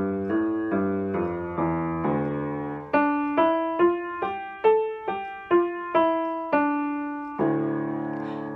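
Slightly out-of-tune piano played in a D minor five-finger position. Lower notes come about three a second for the first three seconds, then higher single notes about two a second, ending on a held note near the end.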